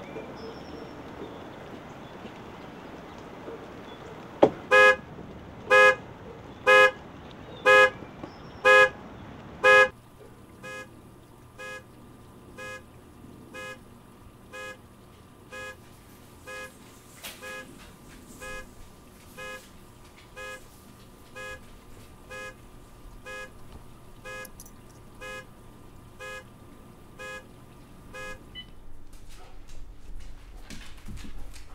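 A sharp knock, then a car alarm sounding its horn in short blasts about once a second, loud at first. About ten seconds in the blasts become much quieter and keep repeating at the same pace until near the end.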